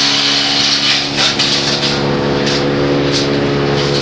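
Branch chipper running steadily: an even engine hum with a hiss over it.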